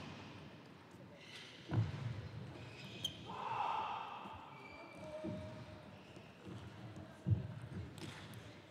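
A few separate dull thuds and one sharp click in a large reverberant sports hall, with a brief murmur of voices about three and a half seconds in, as table tennis players move and get ready between points.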